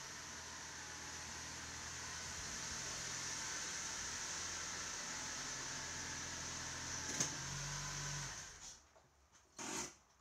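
An SUV's engine running as it drives slowly into a garage and stops. The engine is switched off about eight and a half seconds in, followed by a short noise near the end.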